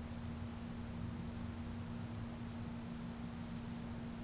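A cricket trilling in two short spells, a brief one at the start and a longer one of about a second near the end, over a steady low hum and hiss.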